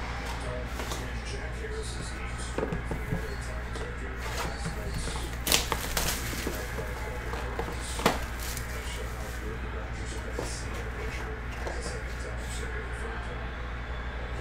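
Light handling of a trading-card box as it is unwrapped and opened: plastic wrapper and cardboard rustling, with a few sharp clicks, the clearest about five and a half and eight seconds in, over a steady low hum.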